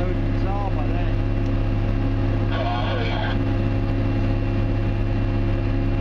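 Heavy machine's engine running steadily, heard from inside its cab as a constant low drone.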